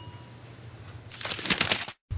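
Paper towel crinkling as a paintbrush is wiped dry after washing, a rustle that starts about a second in and lasts under a second, then cuts off abruptly.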